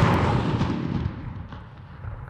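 The blast of a one-kilogram charge of Semtex 1A plastic explosive detonating, dying away as a rolling rumble over about a second and a half.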